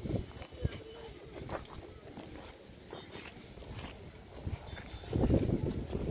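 People talking in the background, faint at first, with a few scattered knocks. The voices grow louder about five seconds in.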